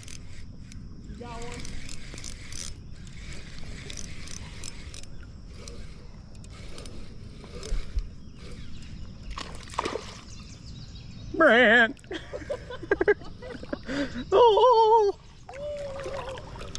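Shallow creek water sloshing and splashing. Two loud, drawn-out wavering vocal calls come about eleven and fourteen seconds in.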